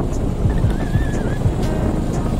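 Wind rushing over the microphone and engine noise from a moving motorcycle, with a faint wavering melody over it.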